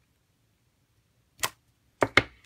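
A single sharp tap about one and a half seconds in, a photopolymer stamp being pressed down onto cardstock; otherwise near silence.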